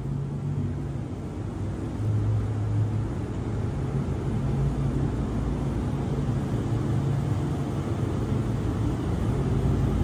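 Dodge Challenger R/T's 5.7 L HEMI V8 running at low speed as the car rolls slowly forward, a steady low rumble echoing off the concrete of a parking garage. It grows a little louder about two seconds in.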